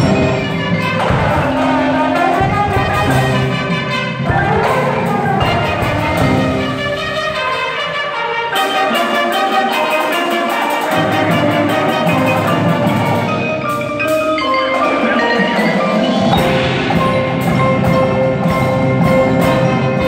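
Keyboard mallet percussion ensemble of marimbas and similar instruments playing a fast passage of struck notes.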